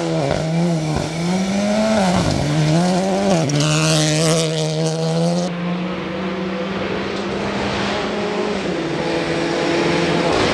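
Renault Clio Rally3 Evo rally car's engine at high revs on a gravel stage, heard as the car approaches. Its pitch rises and falls several times over the first few seconds with gear changes and lifts, then holds a steady high note.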